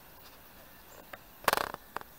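Faint outdoor background hiss, then about one and a half seconds in a short, loud rush of noise lasting about a quarter second, with a small click just after.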